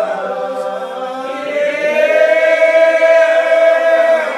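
Old Regular Baptist congregation singing a lined-out hymn unaccompanied, slow and drawn out, moving to a new note about a second in and then holding one long note through the second half.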